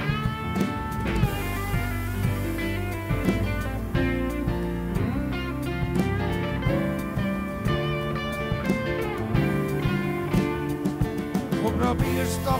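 Live blues band playing an instrumental passage: an electric guitar lead with bent notes over electric piano, bass and a steady beat.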